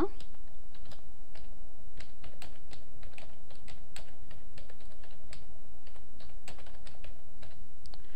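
Typing on a computer keyboard: a run of irregular key presses lasting several seconds, starting about a second in, as a short line of text is typed. A steady low hum runs underneath.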